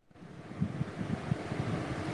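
A participant's open microphone on a video call picking up a steady hiss with irregular low rumbles, like wind buffeting the microphone, starting a moment in.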